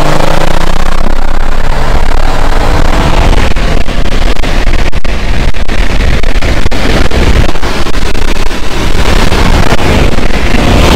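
Cars on the move: a loud, steady rumble of road and wind noise. Over the first couple of seconds an engine note rises in pitch.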